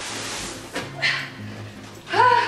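A woman's strained whimpers and grunts of effort as she pushes a heavy box up the stairs, with a breathy strain about a second in. A low bass line of background music comes in partway through.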